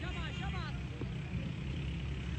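A steady low rumble, with distant voices calling out during the first second.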